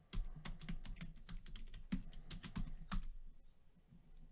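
Typing on a computer keyboard: a quick, irregular run of key clicks that stops a little after three seconds in.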